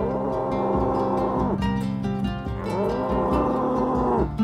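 African buffalo lowing twice, each call a long moo of about a second and a half. The second call rises in pitch at its start, and both drop away at the end. Light guitar music plays underneath.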